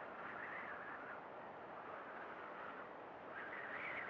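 Faint steady rushing noise with no clear tone, swelling slightly about half a second in and again near the end.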